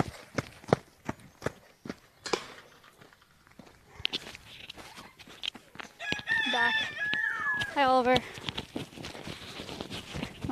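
A rooster crowing once, about six seconds in: a call of about two seconds that holds a high note, drops, and ends wavering. Before it, in the first couple of seconds, crunchy footsteps of someone running on gravel.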